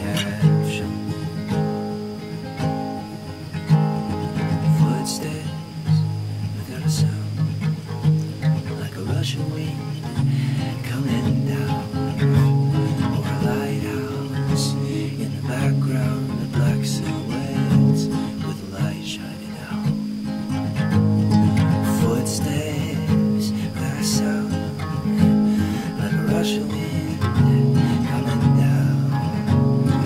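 Steel-string acoustic guitar playing an instrumental passage of an indie-folk song, chords ringing continuously under fresh note attacks.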